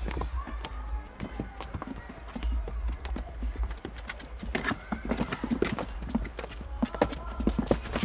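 A pack donkey's hooves clip-clopping on a cobbled stone path, an irregular run of sharp clicks that grows louder and denser in the second half.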